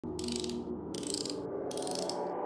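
Logo-intro sound design: a sustained musical tone with three bursts of high clicking, evenly spaced about three-quarters of a second apart, leading into intro music.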